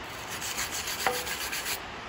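Hand wire brush scrubbing rust and flaking paint off the Oliver 550 tractor engine's valve cover, in a run of short rubbing strokes.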